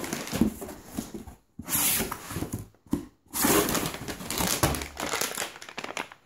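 Plastic packaging crinkling and rustling inside an opened cardboard shipping box as a pouch of dried mango is pulled out. It comes in about three stretches of a second or two, with short pauses between.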